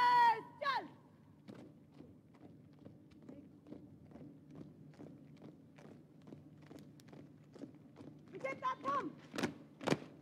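A shouted parade-ground drill command, then the faint, even tread of a squad of officer trainees marching in step, about three steps a second. Near the end comes a second shouted command and two loud boot stamps as the squad halts.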